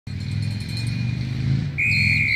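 A motor vehicle engine running with a steady low hum. Near the end a referee's whistle starts a loud, shrill blast.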